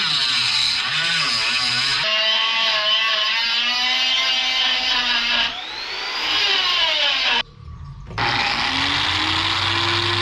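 Small electric angle grinder running against metal clamped in a vise, its whine dipping and recovering in pitch as it is pressed into the work. The sound breaks off briefly about three-quarters through, then a grinder runs on more steadily.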